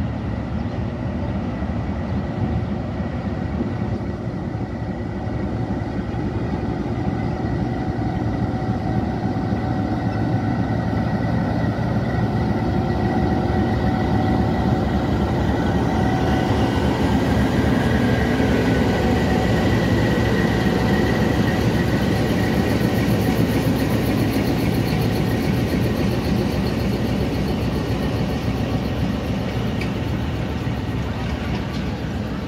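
Pakistan Railways diesel locomotive pulling a passenger train out, its engine running steadily and growing louder as it passes close by. It is followed by the coaches rolling past with wheel-on-rail running noise.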